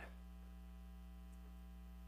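Faint, steady electrical mains hum, otherwise near silence.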